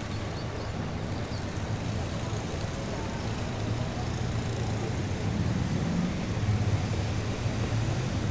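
Urban road traffic: a steady rumble of passing motor vehicles, swelling louder in the second half as a vehicle goes by.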